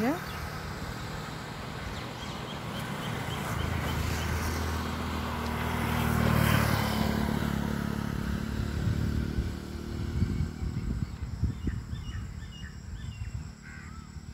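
A motor vehicle's engine passing by, its hum growing louder to a peak about six seconds in and then fading away by about eleven seconds.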